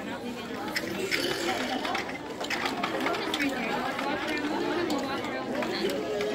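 Indistinct chatter of children and adults talking over one another, with scattered light clicks and knocks.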